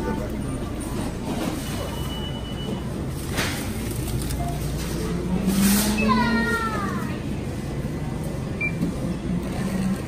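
Supermarket checkout ambience: a steady low hum under voices, with brief rustles around the middle and a falling, wavering voice about six seconds in.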